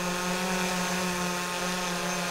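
DJI Mavic 3 Pro quadcopter hovering close by: the steady buzzing hum of its four spinning propellers, holding one unchanging pitch.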